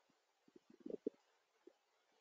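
Near silence, broken by a few faint, brief low sounds about half a second to a second in.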